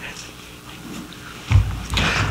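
A man's sniff and shaky breath close to a microphone, quiet at first, then a loud breath blast on the mic about a second and a half in. It is the sound of someone choked up with emotion and wiping his eyes mid-sermon.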